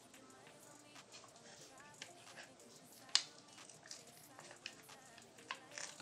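Mostly quiet, with a few faint clicks and taps; the sharpest comes about three seconds in.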